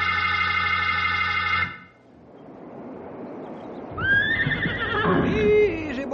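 A held organ chord ends about two seconds in. A rushing-water noise then swells with a low rumble, and a horse whinnies over it in the last two seconds, in a series of rising and falling calls.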